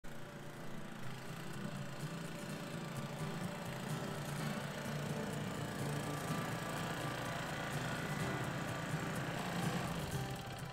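Small single-cylinder engine of a Toro Greensmaster 1600 walk-behind reel greens mower, running at a steady speed as the mower is driven along.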